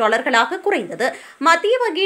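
A woman's voice reading the news in Tamil, with a brief pause about halfway through; only speech is heard.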